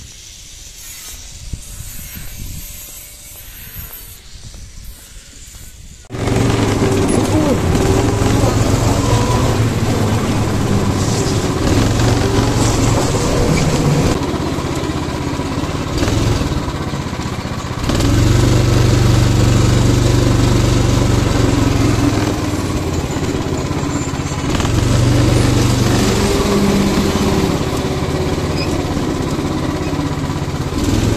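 Go-kart engine running as the kart is driven, starting abruptly about six seconds in; its pitch and loudness rise and fall with the throttle, loudest in two stretches later on. Before it, a few seconds of quiet open-air ambience.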